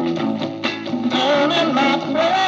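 A 1960s beat-group record playing on a 1950s Dansette Major record player: an instrumental passage with a melody line over a steady beat.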